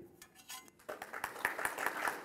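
Audience applause starting about a second in and building, a dense patter of many hands clapping.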